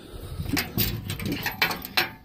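Handling noise as a perforated steel guard plate is picked up and moved: irregular knocks, scrapes and rubbing, with a sharp click near the end.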